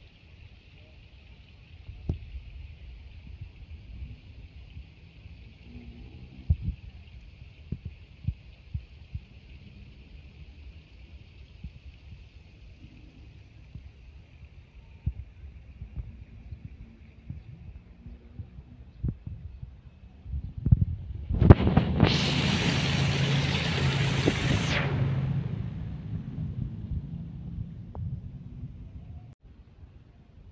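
Water pouring from the rim of a stone fountain into its basin, a steady splashing that fades away over the first dozen seconds, with scattered light knocks. About 21 seconds in, a loud rushing noise with a low hum comes in, holds for about three seconds and then dies away.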